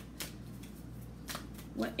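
A deck of oracle cards being shuffled by hand, with a few short flicks of the cards.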